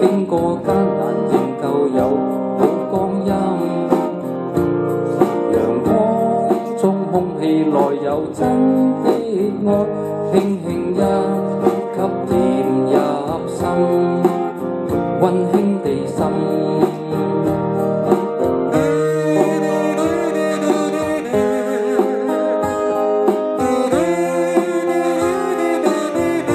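Background music: a guitar-led band passage of a Cantonese pop ballad, with no lyrics sung, between sung verses. About two thirds of the way in, the texture changes and a wavering melody line comes in.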